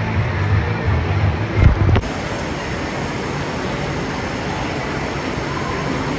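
Steady rushing and splashing of water from a pool and water slides, with wind rumbling on the microphone for the first two seconds. A sudden cut about two seconds in leaves an even rush of water.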